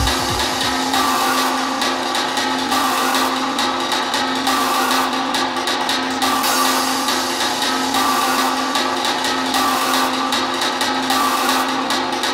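Techno music in a breakdown: the kick drum and bass cut out right at the start, leaving a noisy synth texture over a held tone, pulsing on and off in a repeating pattern.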